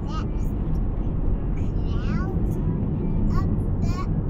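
Steady low road and engine rumble heard inside a moving vehicle's cabin, with brief voice sounds about halfway through and again near the end.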